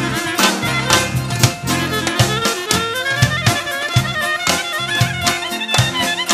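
Balkan wedding band playing an instrumental passage: trumpet and clarinet carrying the melody over a steady beat.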